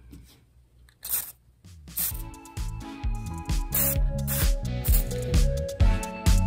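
Aerosol can of penetrating oil sprayed in short hisses, the first about a second in. Background music with a steady beat comes in about two seconds in and carries on under the spray.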